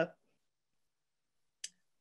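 Near silence, the call audio gated down to nothing, broken by a single short click about three-quarters of the way through.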